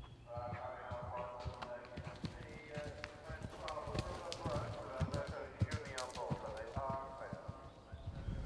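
Event horse galloping past on grass, its hoofbeats thudding irregularly and loudest around five to six seconds in.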